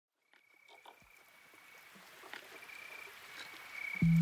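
Faint water ambience fading in and slowly growing louder, with scattered small drips and clicks and a high, steady trill that breaks off and resumes a few times.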